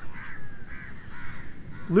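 Crows cawing several times in the background, over a low steady rumble.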